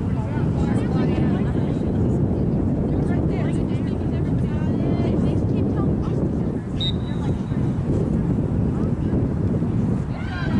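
Wind rumbling on the microphone, with distant shouting voices from players and spectators on the field.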